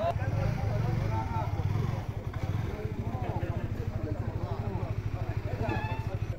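A motorcycle engine running at idle, a fast even low pulsing that is loudest in the first two seconds, under the chatter of many people's voices.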